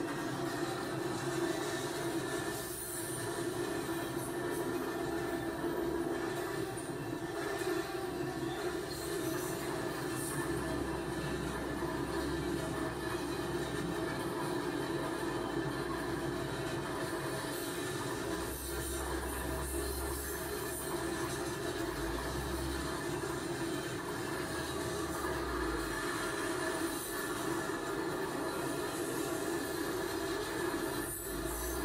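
A train running along the rails with a steady whine and rumble, playing from a train video on a television in the room.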